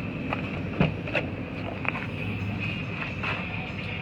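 A Toyota 4Runner's rear liftgate being unlatched and swung open: a few short clicks and knocks over a steady low hum.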